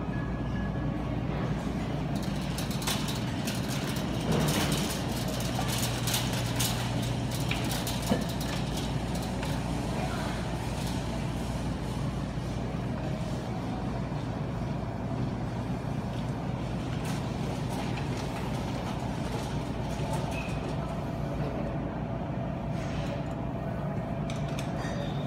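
Grocery store ambience: a steady low hum with scattered clatter and faint voices, busiest a few seconds in.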